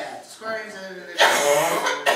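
Speech in a small room, broken in the second half by a loud, rough burst of noise lasting just over half a second.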